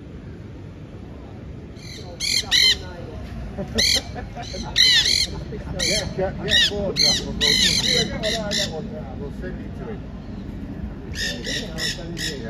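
Parakeets squawking: a run of harsh, loud calls that each rise and fall in pitch, coming in quick clusters, then a short pause and another burst of calls near the end.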